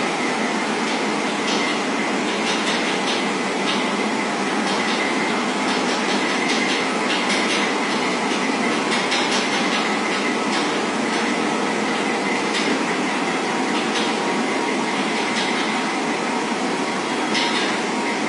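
Steady running noise of a train, with a faint high whine and scattered light clicks.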